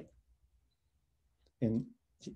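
Near silence in a pause between a man's sentences, with one faint click just before he starts speaking again near the end.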